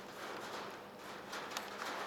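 Faint scratching and light taps of a marker writing on a whiteboard.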